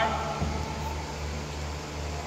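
The end of a drill command, "forward, march", with the last word called out and held for about a second. A steady low hum continues underneath.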